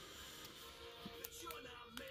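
Faint background music playing in the room, with a few soft clicks from a stack of trading cards being handled.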